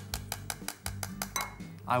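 A metal teaspoon tapping and scraping inside the cup of an electric spice grinder, knocking out freshly ground garam masala: a quick run of light metallic clicks, about seven a second.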